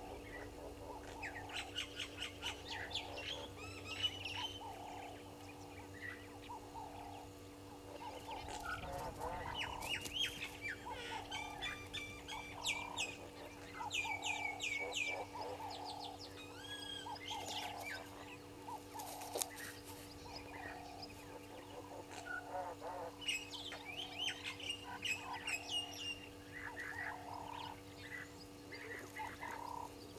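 Wild birds calling in a chorus: many short, overlapping chirps and squawks, with lower repeated calls among them. A steady faint hum runs underneath.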